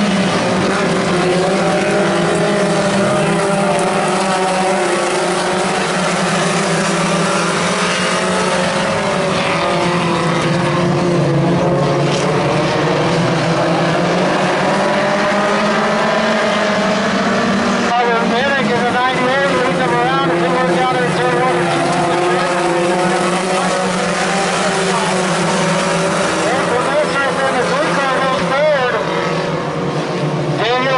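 Engines of several pony stock race cars running at racing speed around a dirt oval, their notes rising and falling in pitch as the cars go through the turns and down the straights.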